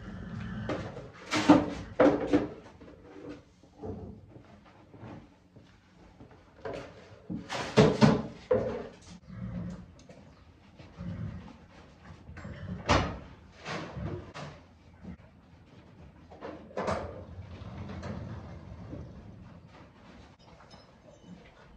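Scattered knocks and clattering bangs of horse-barn chores, sliding stall doors and buckets being handled. There are several loud bangs, the loudest about 1.5 s, 8 s and 13 s in, with quieter shuffling and footsteps between.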